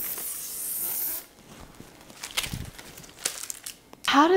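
A high, steady hiss that stops abruptly about a second in, followed by quiet with a few faint scattered clicks.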